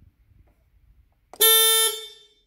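Electric tow tug's horn giving one short, steady beep of about half a second, starting about one and a half seconds in and fading quickly after it stops.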